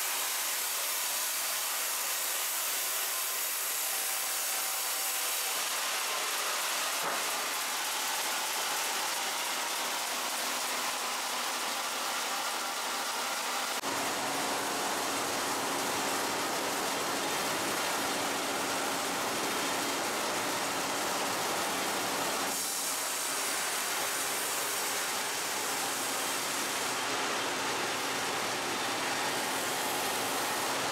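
Steady din of sawmill machinery, with a log saw and powered roller conveyors running and a hissing, even noise. A lower hum joins about halfway through.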